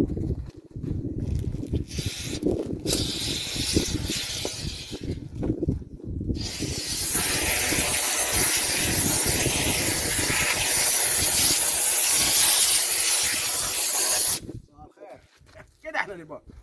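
Pressurised gas hissing out at a well head where an injection hose is being sealed in with bags: two short hisses early on, then a strong steady hiss for about eight seconds that cuts off sharply. The gas is escaping while the well head is not yet tightly closed.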